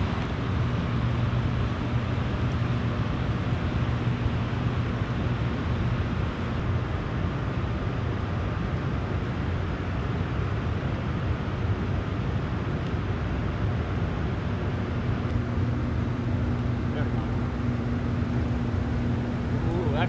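Steady low electrical-sounding hum on two notes over an even rushing noise, the drone of a riverside brick powerhouse's machinery and water. The higher hum note drops out for several seconds in the middle and then returns.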